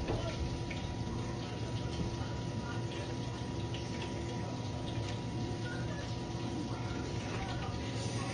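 Steady room noise, a low hum with hiss and a thin constant tone, with faint small rustles and mouth sounds of two people eating soft tacos.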